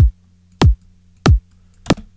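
Synthesized electronic kick drum, built in Kick 2 and layered with a second kick, looping four times at about 0.65 s intervals. Each hit is a sharp click that drops fast in pitch into a short low boom. The layers are not yet in perfect timing with each other.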